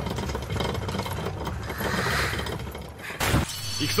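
Dense, crackling noise from the anime episode's soundtrack, like clattering or breaking, with a short sharp burst a little after three seconds in.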